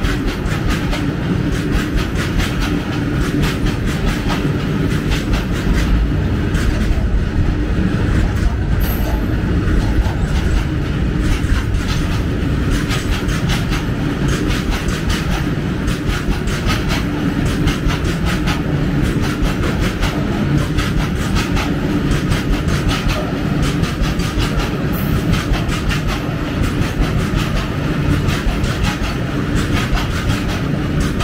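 Freight train running past at speed: a steady loud rumble with the wagons' wheels clattering rapidly over the rail joints.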